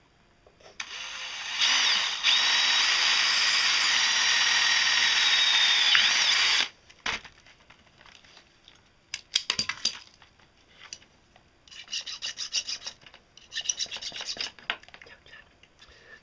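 Cordless drill spinning up and boring through a flat copper wire lug, a steady high whine with cutting noise for about five seconds before it stops. Later a few clicks of the metal being handled, then two spells of scraping near the end as a flat file cleans the copper surface.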